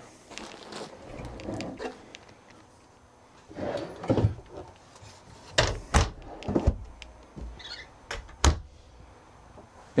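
The sliding drawers of a trailer's bedroom wardrobe being pulled out and pushed shut, and the wardrobe doors closed: soft sliding and rustling with about five sharp knocks, most between four and seven seconds in and the last at about eight and a half seconds.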